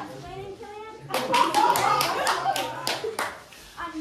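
Hand clapping: a quick run of about ten claps over two seconds, about four or five a second, with a young voice speaking alongside.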